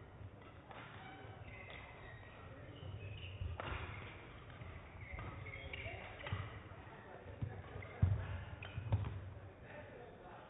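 Faint hall ambience with distant voices, then a short badminton rally in the second half: a few sharp racket strikes on the shuttlecock and footfalls on the court, the loudest about eight and nine seconds in.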